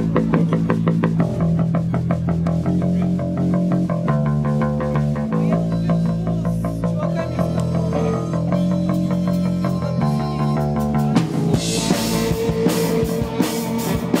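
Live rock band playing: electric guitar, electric bass and a drum kit keeping a fast, steady beat, with a harmonica played into the vocal microphone. Cymbals come in loudly near the end.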